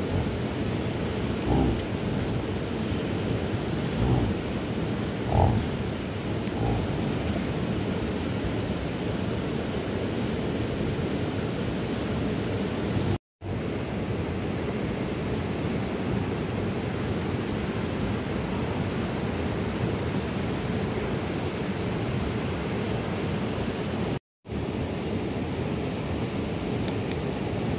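Steady rushing outdoor noise, strongest low down, with a few brief low thumps in the first seconds; the sound cuts out briefly twice.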